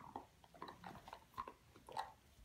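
Dogs gnawing on chew bones: faint, irregular crunching and clicking of teeth on the chews, a few bites a second, the loudest near the end.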